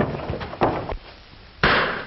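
A single gunshot about a second and a half in, the loudest thing here, sharp and briefly ringing. Several uneven knocks and thuds of a scuffle come before it.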